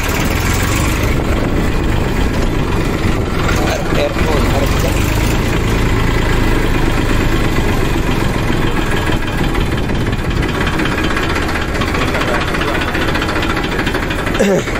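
Farm tractor's diesel engine running steadily under way, heard loud and close from the driver's seat beside the upright exhaust pipe.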